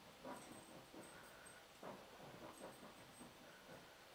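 Near silence: room tone with a few faint, short soft sounds.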